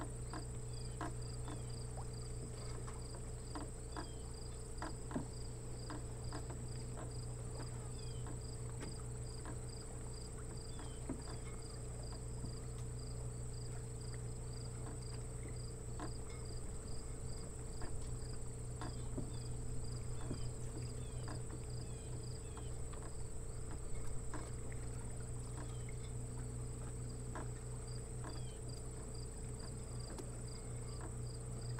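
Insect chirping in a steady, even rhythm of about two high chirps a second, over a constant low hum and scattered faint clicks.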